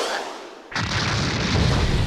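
A whoosh dies away, then about three-quarters of a second in a sudden deep boom like an explosion sets off a rumble that keeps going.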